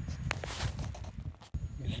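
Rustling and knocking from a hand-held phone being handled outdoors, with low rumble and a few sharp clicks. The sound breaks off abruptly about one and a half seconds in at an edit cut.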